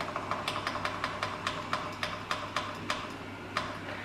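Digital slow cooker's timer button pressed over and over, giving a quick even run of short clicks, about five a second, as the cooking time is stepped up to six and a half hours.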